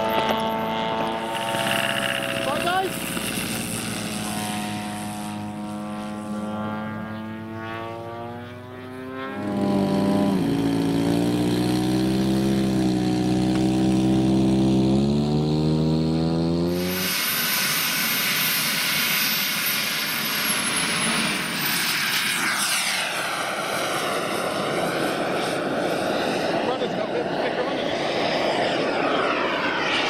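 Engines of radio-controlled scale model warplanes running, a piston engine falling in pitch and then a second one running steadily and rising a little. Then a sudden cut to a model jet's turbine, a high whine that falls away and a rush that sweeps in pitch as the jet flies past.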